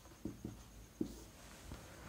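Marker pen writing on a whiteboard: a few faint, short strokes and taps.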